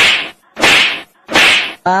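A hand slap repeated three times at an even pace, about two-thirds of a second apart, each a loud, sharp smack that fades quickly.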